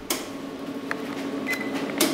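Steady low hum of running laboratory equipment, with a faint click about a second in and a short high beep shortly after.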